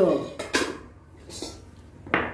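Stainless steel naengmyeon bowls clinking as an empty one is set onto a stack: a sharp metallic clink with a brief ring about half a second in, and a fainter clink a second later.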